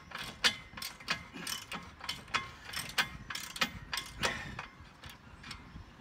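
Craftsman socket ratchet clicking in irregular runs as it is worked back and forth on a tight bolt in a steel hitch swing arm. The clicks thin out near the end, as the bolt seems to have stopped going down.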